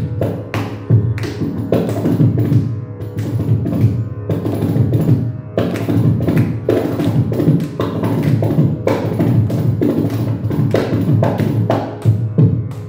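Carnatic percussion passage: a kanjira and a drum played together in fast, dense rhythmic strokes over a deep drum bass, with no voice.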